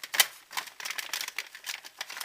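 Stiff clear plastic packaging crackling and clicking as it is handled and pulled open: a rapid, uneven run of sharp crackles, loudest just after the start.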